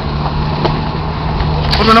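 Car engine and road noise heard from inside the moving car's cabin: a steady low hum.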